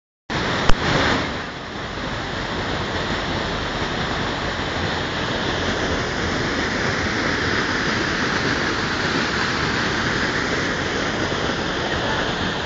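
River water rushing and tumbling over rocks in a steady, even rush. A single sharp click sounds just under a second in.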